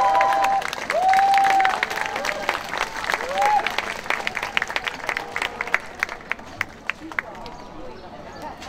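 Audience applause, with cheering voices calling out over the clapping in the first few seconds; the clapping thins to scattered single claps and dies down toward the end.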